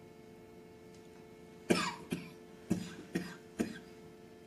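A person coughing, five short coughs in two quick groups in the second half, over a faint steady hum.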